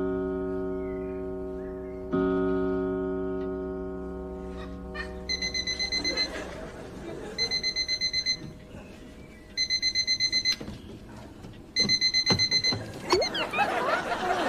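Two long musical notes, each struck and slowly fading. Then, from about five seconds in, a small electronic alarm clock beeps in rapid high pulses, in four runs of about a second each, roughly two seconds apart. Audience laughter starts near the end.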